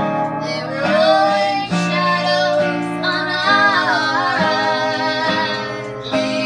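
Live singing in harmony, led by female voices, over guitar accompaniment.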